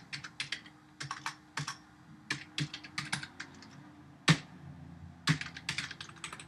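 Typing on a computer keyboard: irregular quick runs of key clicks with short pauses, and one louder keystroke a little past the middle.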